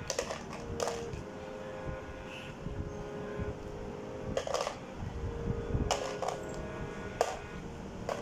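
Plastic toy blocks knocking against a hollow plastic shape-sorter bucket: a handful of separate clacks a second or more apart.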